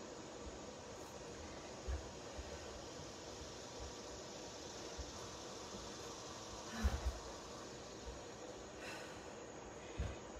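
A woman breathing deeply against a steady low hiss as she recovers from a hard set of kettlebell swings. A few soft low thumps come through, the loudest about seven seconds in.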